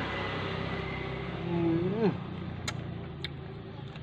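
A man eating with his mouth full lets out a drawn-out 'mmm' that rises sharply at the end about two seconds in, over a steady low rumble that fades soon after. Two sharp clicks follow near the end.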